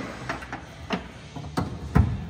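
A few short clicks and knocks of a 12-volt plug and its cable being handled. The loudest comes at the very end, as the plug is pushed into the 12-volt socket.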